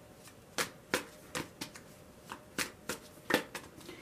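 A deck of tarot cards being shuffled by hand: a string of irregular short clicks and taps, about three a second, as small packets of cards are lifted and dropped back onto the deck.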